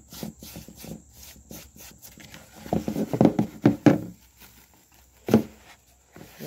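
Hands rubbing salt into a raw slab of beef flank in a plastic bowl: soft irregular scrapes and pats, then a louder bout of handling in the middle as the salted meat is lifted and turned over, and one short sharp knock near the end.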